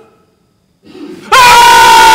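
A near-silent pause, then a loud, high-pitched frightened scream starts about a second and a half in and holds one pitch.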